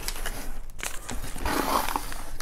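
Packaging being handled in a cardboard shipping box, with plastic air-pillow packing rustling and crinkling in irregular bursts, a little louder near the end.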